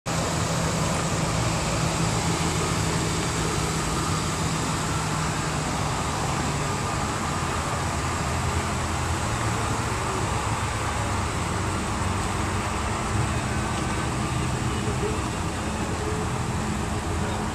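Steady low engine hum mixed with outdoor road-traffic noise.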